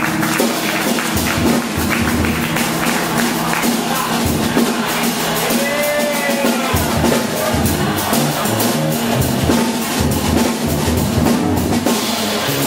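Live small band playing, with a drum kit keeping time on cymbals and drums and an upright double bass playing low notes underneath.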